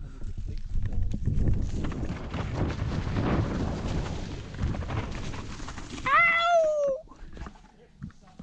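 Canyon Torque CF 9.0 mountain bike ridden fast down a dirt trail covered in dry leaves: steady rumble of tyres over dirt and leaves with rattling of the bike. About six seconds in, a short high whoop that falls in pitch, after which the noise drops for the last second.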